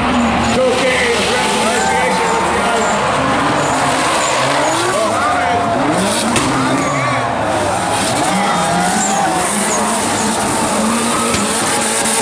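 Two drift cars sliding in tandem through a turn, their engines revving up and down over and over while the tyres squeal and skid.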